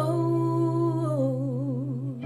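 A woman singing one long held "oh", which steps down in pitch about a second in and then wavers with vibrato, over a sustained backing chord.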